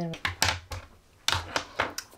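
Fine gel pen writing on thin Tomoe River paper: a few short scratchy strokes, with a brief gap between them.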